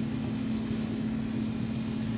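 Steady low electrical hum from a running appliance, with a faint tick near the end.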